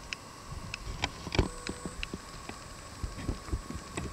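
Horse's hooves knocking on a horse float's ramp as it steps down out of the trailer: a run of irregular knocks, the loudest about a second and a half in with a brief ring after it, then softer thuds as the hooves reach the grass.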